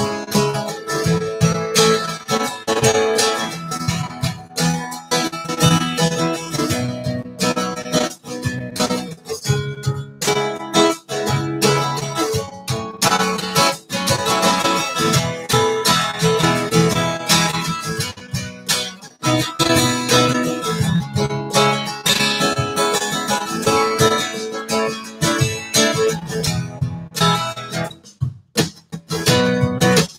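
Dreadnought acoustic guitar strummed in a steady rhythmic groove, the strokes coming quickly and evenly, with a brief break in the rhythm near the end.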